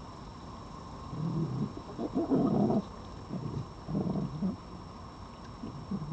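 Red fox growling: a run of low, rough growls starting about a second in, loudest around two to three seconds, and fading out by about four and a half seconds.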